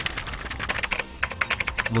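A rapid run of keyboard-typing clicks, a news transition sound effect between items, several a second and coming thicker in the second half.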